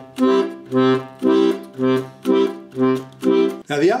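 Black Diamond chromatic button accordion's Stradella bass side playing an oom-pah accompaniment: a C bass note alternating with a C major chord, short detached notes at about two a second. A man starts speaking near the end.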